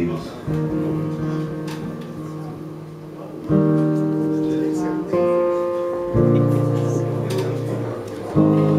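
Acoustic guitar playing slow chords that ring out and fade, about four chords struck in turn, as the opening of a song.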